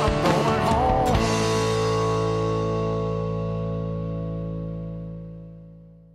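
End of a rock song on guitar, bass and drums: a last few drum hits in the first second or so, then the band's final chord held and ringing out, fading slowly away.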